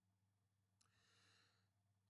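Near silence: a faint low hum, with a very faint intake of breath about a second in.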